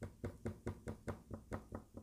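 Light, rapid tapping on the surface under a bar magnet and scattered iron filings, about five taps a second. The tapping jolts the filings so they line up along the magnet's lines of flux.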